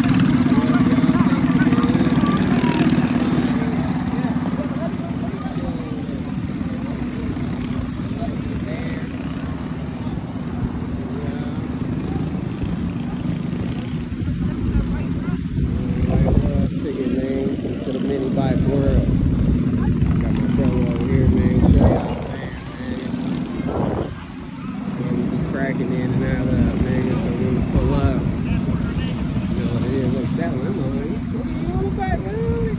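Small gasoline mini bike engine running with a steady drone, strongest in the first several seconds and then easing off, with people talking in the background.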